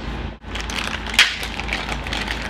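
Small cardboard toy box being torn open by hand: crackling and tearing, with one sharp crack about a second in.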